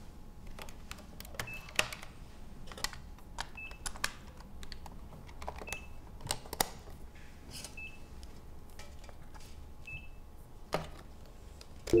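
Plastic clicks and handling of a small yellow portable cassette player with its door opened and worked by hand, sharp separate clicks every second or so, with a short high beep about every two seconds.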